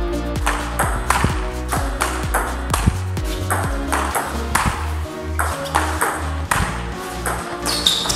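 A table tennis rally: the ball clicks sharply off the rubber-faced rackets and the table at roughly two strikes a second. It plays over background electronic music with a steady beat.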